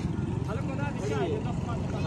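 Faint voices talking in the background over a steady low rumble of outdoor noise.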